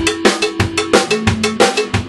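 Acoustic drum kit played with sticks: a quick run of strikes, about five a second, with the drums ringing on between hits.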